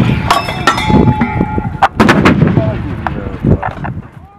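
A towed howitzer's firing report fades at the start. A string of sharp metallic clanks and a brief metallic ringing follow as the gun is worked, with another loud bang about two seconds in.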